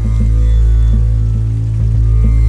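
Background music with a deep, steady bass and a light, even beat.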